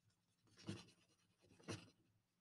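Faint crayon strokes scratching on paper: two short strokes about a second apart, colouring in a drawing.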